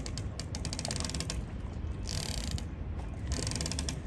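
Fast, even ratchet-like mechanical clicking for about a second and a half, then two short bursts of high hiss, over a steady low rumble.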